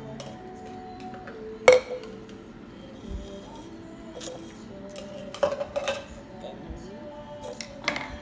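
Background music with steady held notes, over which glass tumblers clink and knock on a stone countertop a few times. The loudest, sharpest clink comes just under two seconds in, and a few more come later.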